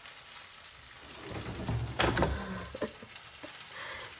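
Crackly rustling and handling noise, with a low rumble and a sharp click about two seconds in and a few lighter clicks after it.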